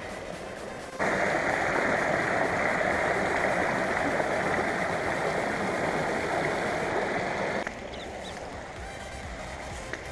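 River water rushing over rocky rapids: a steady, loud rush that starts suddenly about a second in and cuts off sharply a little before the end.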